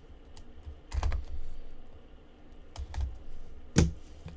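Gloved hands handling a cardboard trading-card box: a few knocks and taps as it is gripped and turned, with a cluster about a second in and the sharpest click just before the end.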